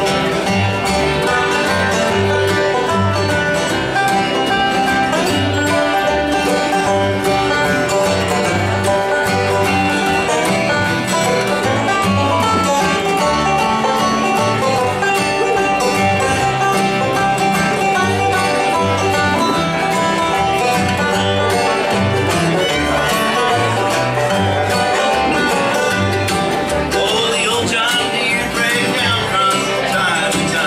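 Bluegrass band playing live: fiddle, banjo, mandolin and acoustic guitar over an upright bass keeping a steady beat.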